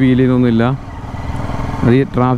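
Honda CBR250R's single-cylinder engine running at low speed, heard plainly for about a second in the middle, between stretches of a man talking.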